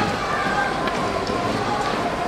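Crowd murmuring in a dense street crowd, with the steady shuffle of the bearers' feet as they carry the procession float forward.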